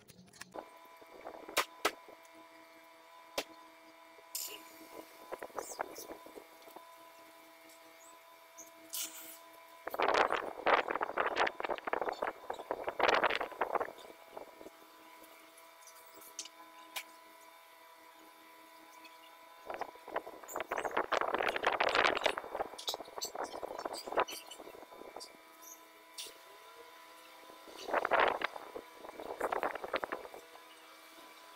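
A steady hum of several held tones, with voices talking in three loud stretches: about ten seconds in, around twenty seconds in, and near the end.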